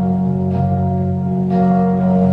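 Kurzweil SP2X stage keyboard playing held, sustained chords over a steady low bass note, with new chords coming in about half a second and a second and a half in.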